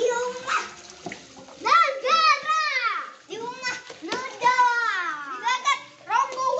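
Young children's high-pitched squeals and laughter in several rising-and-falling cries, with water splashing in a shallow paddling pool.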